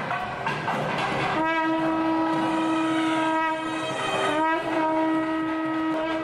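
A wind instrument in a temple procession holds one long, steady note for about two and a half seconds, then bends briefly upward and holds a second long note, over a noisy background.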